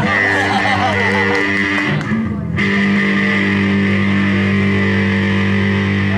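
Electric guitar played loud through an amplifier: a held note ringing, a brief break about two seconds in, then a new note held and sustained to the end.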